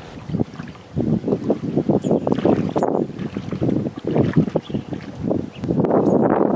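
Shallow river water splashing and sloshing around a man's legs as he wades, in quick, uneven splashes that begin just after the start.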